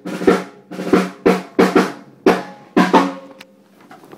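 Snare drum struck about eight times at an uneven pace, single hits and quick pairs, each hit with a short pitched ring. The drum is being sound-checked for recording.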